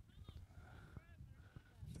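Near silence: faint outdoor ambience with a low rumble and a few faint, short high-pitched calls. A commentator's voice comes in right at the end.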